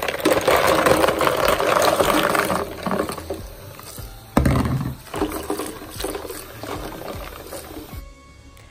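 Hot water running from a kitchen tap into a stainless-steel sink full of soapy water, loudest in the first few seconds, with a thump about four seconds in. Background music plays underneath.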